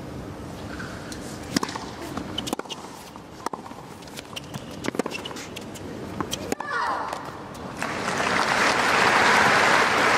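Tennis rally: sharp strikes of racket on ball and ball bounces, about one a second. The rally ends and crowd applause swells near the end.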